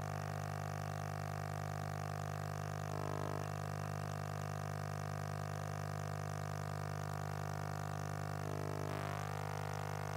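Steady low electrical hum with a stack of overtones from the hall's sound system: mains hum on an open microphone line while nobody speaks.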